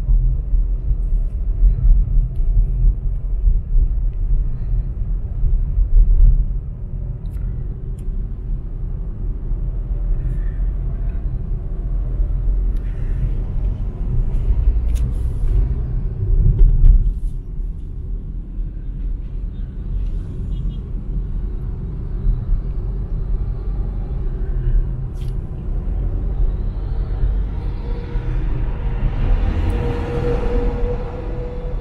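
Low road and engine rumble heard inside a moving car's cabin, louder for the first several seconds. Near the end the noise swells as a large truck passes close alongside.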